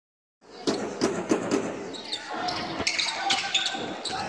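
Basketball bounced four times in quick succession on a wooden gym floor, echoing in the hall. Then a sharp knock comes near three seconds in, followed by voices and short high squeaks as play starts around the basket.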